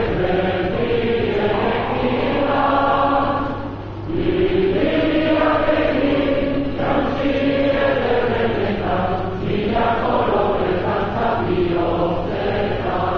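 A large crowd singing a Basque song together in long held phrases, with a short breath between phrases about four seconds in.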